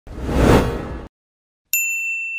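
Logo-intro sound effects: a swoosh that swells and fades over about a second, then after a short gap a steady, high electronic beep begins near the end.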